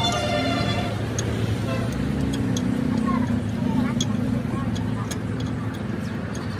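Voices and background vehicle noise, with light, irregular metal clicks from a screwdriver working at a truck's wheel hub cap.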